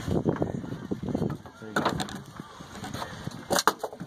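Mostly talking, broken by two sharp knocks: one about two seconds in and a louder one near the end.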